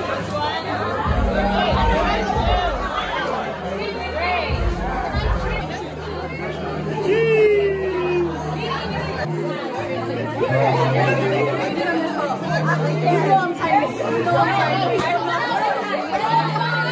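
Crowd chatter: many voices talking at once over background music, whose deep bass notes hold for about a second each.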